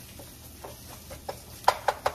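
Wooden spatula stirring cauliflower fried rice in a nonstick frying pan, soft and light at first. Near the end, sharp knocks begin as the spatula chops and strikes against the pan.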